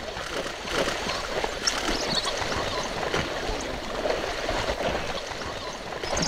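Water sloshing and gurgling as an African wild dog swims through a river, with irregular small splashes.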